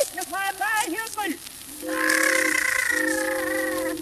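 A voice on a film soundtrack, wordless, in short gliding phrases, then a long held tone of about two seconds starting about halfway through.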